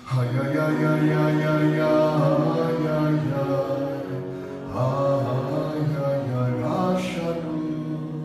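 A male voice chanting a liturgical prayer melody in long held notes, with short breaks for breath about four and a half and nearly seven seconds in.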